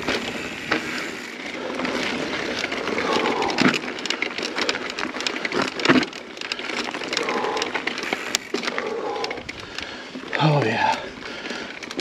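Mountain bike rolling over dirt singletrack, its tyres and frame rattling, with a sharp knock about six seconds in. Over it the rider breathes hard from race effort, with a short voiced grunt near the end.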